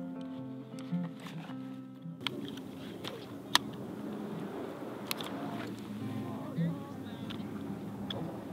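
Acoustic guitar music that cuts off about two seconds in. After it comes outdoor wind noise on the microphone, with a few sharp clicks and knocks as a folding camp stool's frame is opened and sat on.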